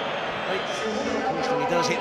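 Football stadium crowd noise, a steady wash of many voices, under a TV commentator's voice as a free kick is taken.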